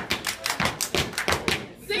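Rapid sharp claps and foot stomps from dancers on a hard hall floor, about six a second in a quick rhythm.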